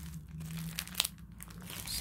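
Clear plastic packets of Keitech soft-plastic lures crinkling as they are handled, with a sharp crackle about a second in.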